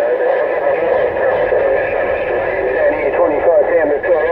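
CB-band transceiver speaker receiving on 27.085 MHz: voices come through weak and garbled under steady static, thin and cut off at the top like radio audio, with a steady tone running under them.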